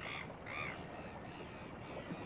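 A bird calling over and over, short arched calls about every half second, loud at first and fainter toward the end.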